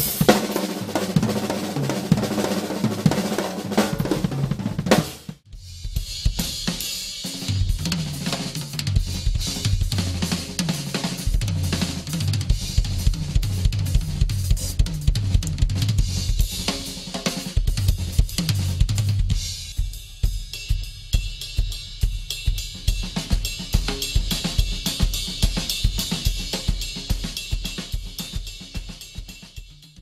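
Drum kit played hard, with a Sonor Pure Canadian maple snare and crashing cymbals. About five seconds in it cuts off suddenly, and a drum-led track with a steady beat and hi-hat follows, fading out at the end.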